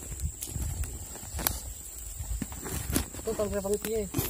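Faint rustling and knocking, with a few sharp clicks, then a short hummed voice sound from a person in the last second.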